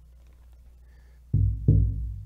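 Large rawhide-headed pueblo drum struck twice with a padded beater, starting about a second and a half in. The two deep hits come close together and ring on.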